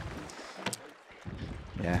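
Faint steady outdoor background noise from the water-side feed, with one sharp click about two-thirds of a second in, then a voice saying "yeah" near the end.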